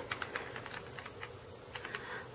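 Plastic Rubik's Cube layers being turned by hand: a scattered run of small, quick plastic clicks.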